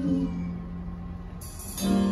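Live rock band music: a woman's held sung note trails off just after the start, leaving a quiet low sustained tone. A cymbal shimmer builds, and then the full band and voice come back in loudly near the end.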